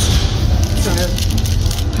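Paper wrapper of a grilled wrap crinkling and rustling in the hands: a short rustle at the start and a run of fine crackles near the end, over a steady low hum.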